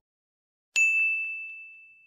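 A single bright ding, a bell-like chime sound effect, struck about three quarters of a second in and ringing on as it slowly fades.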